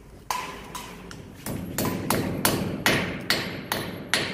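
Hammer striking a steel drop-in anchor ('strong anchor') to drive it into a drilled hole in a concrete ceiling. There are about nine sharp knocks: two slower blows, then a steady run of roughly three a second.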